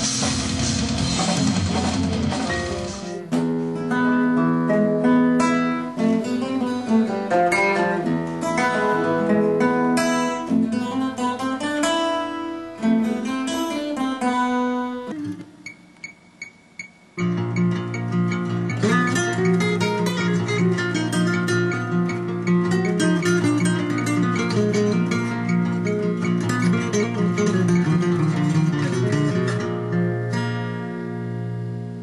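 About three seconds of a full band recording with drums, then a solo acoustic guitar: picked single-note lines with some sliding notes, a brief near-pause about halfway, then strummed chords ringing on.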